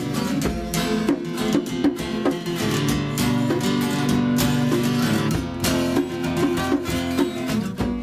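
Acoustic guitar strummed in a steady rhythm as an instrumental intro, played with a bare foot on a guitar lying flat on the floor, with a second acoustic guitar accompanying.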